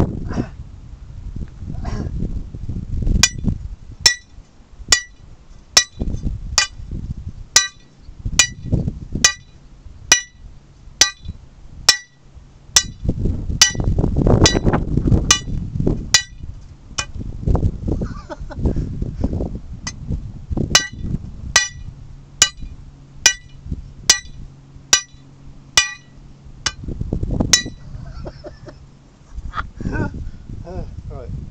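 Lump hammer striking the top of a steel hand-drilling rod with a tungsten bit, a little under one blow a second, each blow a sharp metallic clink with a short ring, while the rod is turned between blows to bore into the rock. A low, uneven rumble runs underneath.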